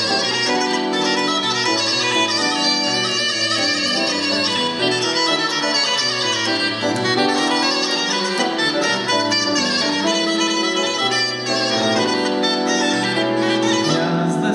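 Bulgarian gaida (goatskin bagpipe) playing a fast, ornamented folk melody with quick note changes throughout.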